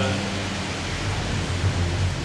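Steady hiss with a low hum underneath: the background noise of a live stage recording, with no speech.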